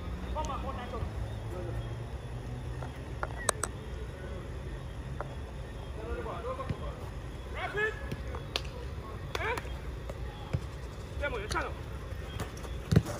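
Players on a football pitch calling out in short shouts, with a few sharp thuds of a ball being kicked and a steady low rumble underneath.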